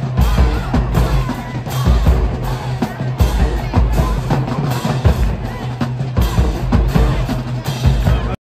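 Marching band playing live: bass drums and snares beating steadily under brass, with a steady low sousaphone line.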